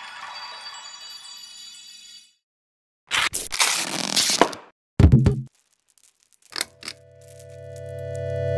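Logo animation sound effects: a chime tone fades out, and after a short silence comes a crackling, scraping rush, then a deep thud about five seconds in and a few quick clicks. Near the end a synth chord begins and swells steadily louder.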